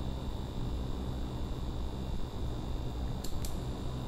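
Steady background noise: a low hum under an even hiss with a faint high whine, and two faint clicks about three and a quarter seconds in.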